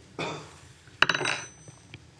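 Stainless-steel Apliquick appliqué tools clicking against each other over the fabric, with one sharp metallic click and a brief thin ring about a second in, after a soft rustle.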